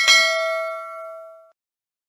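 Notification bell sound effect: a single ding that rings with a few pitches and fades out over about a second and a half.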